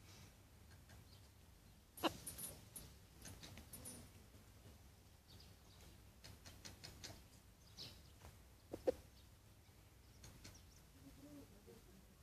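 Chickens foraging on grass: faint, soft low clucks among scattered short ticks and rustles, with a sharper tap about two seconds in and another just before nine seconds.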